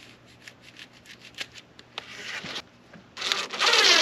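Small clicks and short scrapes of hands working a brass hose fitting on a standpipe, then a loud rasping rub lasting most of the last second.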